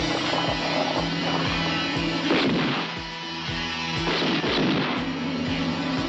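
Action-film soundtrack: gunfire and blast effects over a rock score with a steady beat, with two louder bursts about two and four seconds in.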